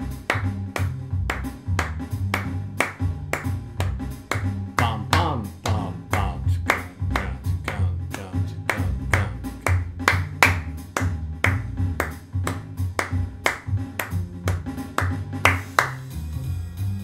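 Hand claps beating out a dotted-quarter-note rhythm, a pulse of threes laid over the beat and closed as a four-bar phrase, over a jazz backing track with a low stepping bass line. The claps and track keep an even pulse throughout.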